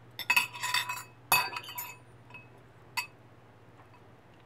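Two metal forks clinking and scraping against a glass dish while shredding a cooked chicken breast. There is a quick flurry of clinks with a brief glassy ring in the first two seconds, and one more clink about three seconds in.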